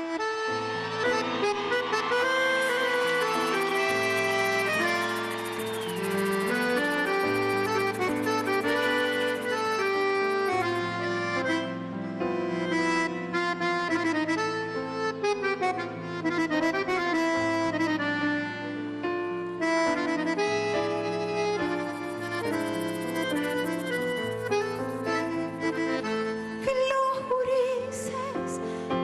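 Piano accordion playing a fast instrumental chamamé passage in running notes, backed by the band over a steady pulsing bass line.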